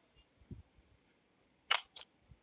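A faint high hiss, then two sharp clicks about a quarter of a second apart near the end.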